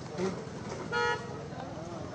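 A vehicle horn gives one short, steady toot about a second in, over a background murmur of voices.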